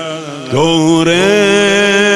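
A man singing a Persian devotional chant (madahi) into a microphone. After a short break, a new note starts about half a second in, slides up and is held with a slow vibrato.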